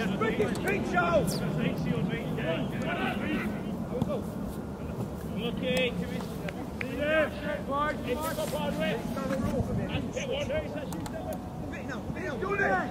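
Players on a football pitch shouting and calling to each other at a distance, short shouts scattered throughout over a steady low rumble.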